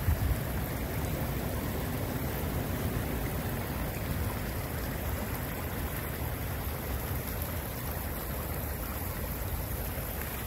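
Shallow creek water running steadily over a stony riffle.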